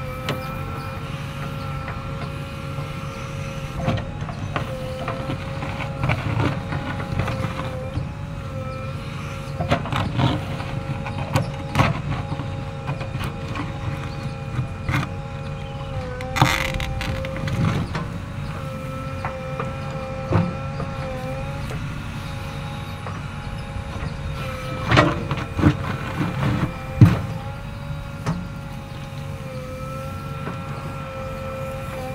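JCB backhoe loader running and digging with its backhoe arm: a steady engine-and-hydraulic whine that dips slightly as the arm works, over a low rumble. Scattered clanks and knocks of the bucket and arm through the dig, the loudest in a cluster a few seconds before the end.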